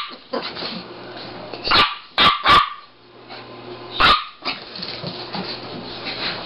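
A Pomeranian and a Yorkshire Terrier at play, with about five short barks: two in quick succession near the middle and another about four seconds in.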